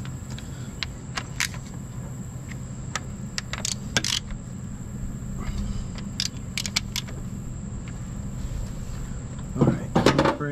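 Half-inch ratchet and socket on transmission bellhousing bolts: scattered metallic clicks and clinks, some in short quick runs, as bolts are snugged down by hand. A steady low hum runs underneath.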